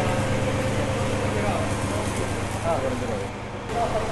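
A Caterpillar excavator's diesel engine runs steadily as a low, even hum that fades about halfway through, after which people are heard talking.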